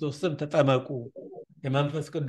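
A man speaking, breaking off for a short pause just after a second in, then going on.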